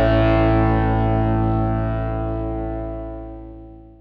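The closing chord of a rock song on distorted electric guitar with effects, held and left to ring out, fading steadily until it is very faint near the end.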